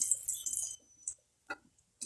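Hot pork lard sizzling faintly in a frying pan, dying away within the first second, then a few light clicks of a metal spoon against the pan and plate as fried eggplant slices are lifted out.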